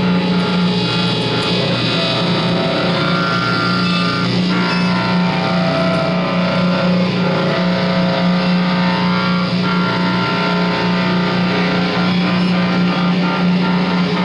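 Electric guitars run through effects pedals and electronics, playing an experimental drone: a steady low tone underneath layered held, distorted tones that shift every few seconds.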